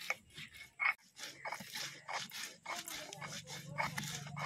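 A stone roller crushing dry red chillies and seeds on a flat grinding stone, in a run of irregular short crunching and scraping strokes.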